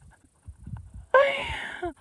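Faint low wind rumble on the microphone, then about a second in a short, breathy, wordless vocal sound from a woman.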